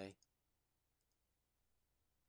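Near silence broken by a few faint computer mouse clicks.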